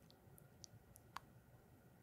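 Near silence with a few faint, short clicks, the loudest just over a second in.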